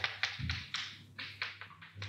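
Chalk tapping on a blackboard while a word is written: a quick, uneven run of light taps, about six a second.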